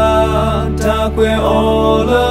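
A male voice singing a Karen-language song over a backing track with sustained low bass notes.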